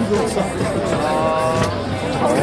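Busy street-food market ambience: a din of crowd noise and overlapping voices, with one held, pitched call or tone about a second in.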